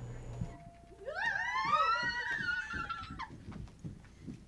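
A high-pitched squealing cry from a person's voice. It rises about a second in, is held for about two seconds and then breaks off.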